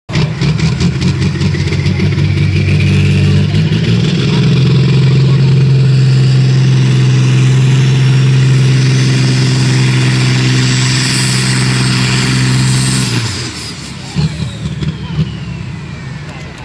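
Diesel engine of a vintage bonneted Volvo truck at full throttle under heavy load as it pulls a weight-transfer sled. The engine holds a steady, loud note for most of the pull, then cuts back sharply about thirteen seconds in.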